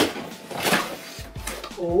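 Cardboard box lid being lifted open, with a few short scraping and rustling sounds of cardboard sliding over cardboard, the loudest in the middle. A voice starts just at the end.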